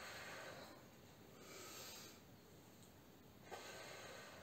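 Faint, slow breathing of a woman during a deep-breathing exercise: three soft breaths, each under a second long, drawn in through the nose and let out.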